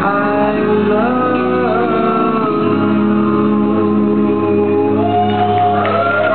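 Live rock music: a male lead singer holding long, drawn-out sung notes over a sustained band backing.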